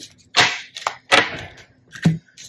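Tarot cards being handled on a table: two sharp snaps about three quarters of a second apart, with a fainter click between them.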